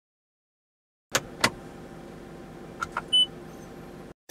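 Inside a car: a low steady hum begins about a second in, with two sharp clicks right after, two softer clicks later, and one short high beep near the end.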